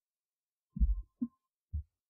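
Three soft, low thumps a little under half a second apart, the first the loudest, picked up close to the microphone.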